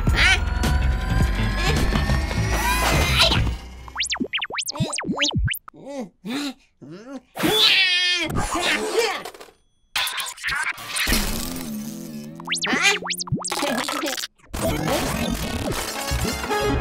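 Cartoon soundtrack: music under a rising whirl at first, then a run of springy boing sounds, a wobbling whistle and assorted whacks and crashes.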